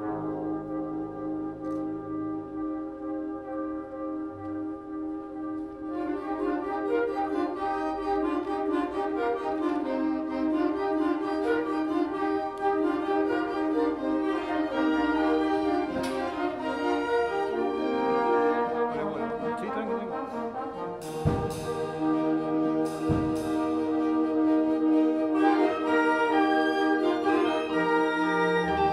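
Live orchestra with a prominent brass section playing. Held chords open it, and about six seconds in a fuller passage of moving notes takes over, with a few sharp hits in the second half.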